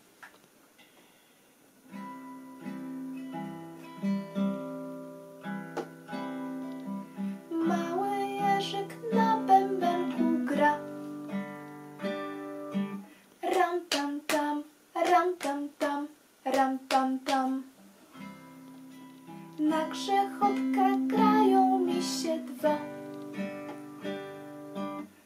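Classical guitar strummed in chords, starting about two seconds in, with a woman's voice singing along over parts of it.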